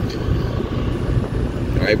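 A steady low rumble of outdoor background noise, with faint voices.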